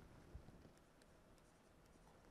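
Near silence, with the faint scratch of a pen writing numbers and one soft knock about a third of a second in.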